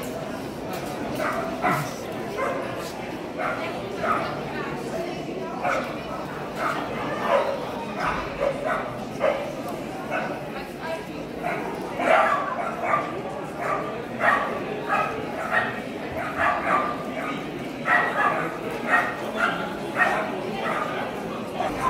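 Dogs barking repeatedly in short, sharp yaps over the chatter of a crowded hall, the barks coming thicker and louder in the second half.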